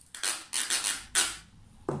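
A wooden stick scraped along the ridges of a steel tin can, the tin made into a homemade percussion instrument: three quick rasping scrapes in the first second and a half.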